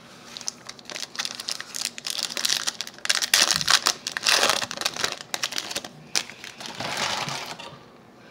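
Foil wrapper of a trading-card pack crinkling as it is handled and torn open, loudest in the middle, dying away shortly before the end as the cards come out.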